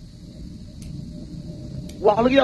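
Low, steady background rumble with a faint hum during a pause in speech.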